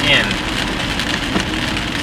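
Steady hiss of rain and tyres on a wet road, heard from inside a moving car's cabin.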